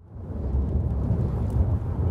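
Steady low rumble of a car driving at highway speed, engine and tyre noise heard from inside the cabin, fading in over the first half second.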